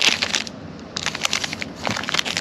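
Foil trading-card pack wrappers crinkling and crackling as hands shuffle and sort the packs, in quick irregular crackles with a short lull about half a second in.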